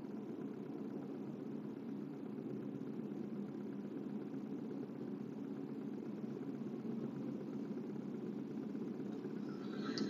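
Steady low hum of a car heard from inside the cabin, the engine running at an even pitch with no revving.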